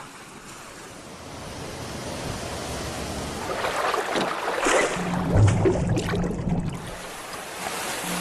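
Sea water washing and splashing, building up over the first few seconds with a few louder splashes. Low, steady music notes come in about five seconds in.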